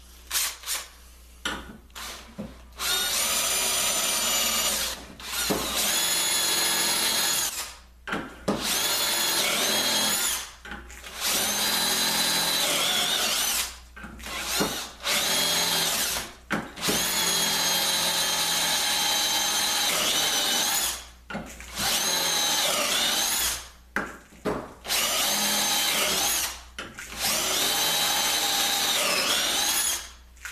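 Cordless drill boring dowel holes into a wooden board through the steel guide bushings of a doweling jig. It runs in about eight bursts of a few seconds each, with short trigger taps between them, and its whine dips in pitch as the bit bites into the wood.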